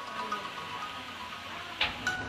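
Chopped long beans (sitaw) sizzling in an oiled frying pan just after soy sauce is poured over them, a steady hiss. A metal ladle scrapes the pan once, briefly, near the end.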